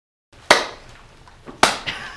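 Two sharp hand claps about a second apart, each trailing a short echo off the surrounding rock walls.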